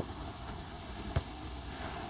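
Steady outdoor field noise with one sharp thud of a football being kicked about a second in.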